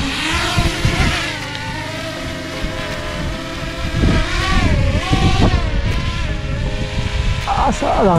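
Small quadcopter drone's motors whining as it takes off and climbs. The pitch rises and falls several times as the rotors change speed.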